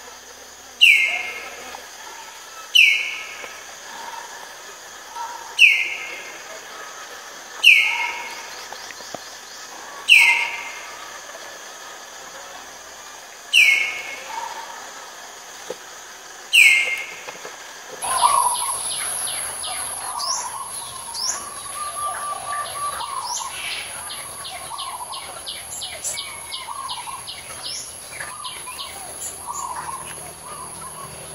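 Common hill myna giving seven loud calls a few seconds apart, each a sharp falling whistle. From about eighteen seconds in, the sound changes to many small birds chirping over a steady high insect buzz.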